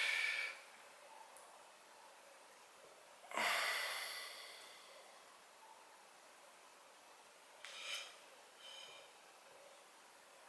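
A person breathing out heavily through the nose close to the microphone about three seconds in, fading over about a second, with two fainter breaths near the end; otherwise quiet room tone.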